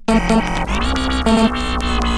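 Electronic music track resuming after a split-second silent break, with a constant deep bass under dense sustained chords; the bass line steps up in pitch about half a second in.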